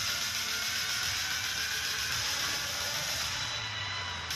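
Movie trailer soundtrack playing through a home cinema sound system: music under a loud, dense, steady rush of action sound effects, with a low rumble coming up near the end.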